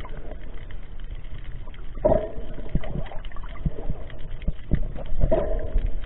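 Muffled underwater sound picked up by a snorkeler's camera: a constant water noise with scattered small clicks and crackles, and two louder surges about two and five seconds in.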